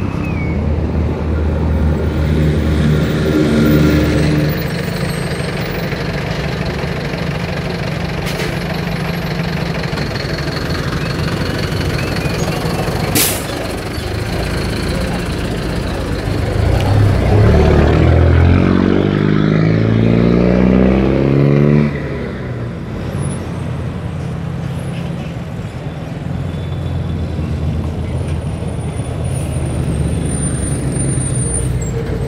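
Road traffic at close range: a city bus's engine running close by in the first few seconds, then a vehicle engine revving up, its pitch climbing in steps from about 17 to 22 seconds before it drops off suddenly. A single sharp click about 13 seconds in.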